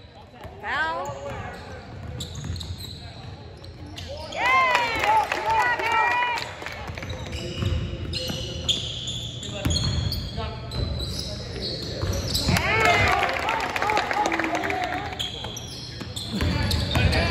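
Basketball play in a gym: sneakers squeaking on the hardwood court in several bursts of short arching chirps, with a basketball bouncing and indistinct voices in the hall.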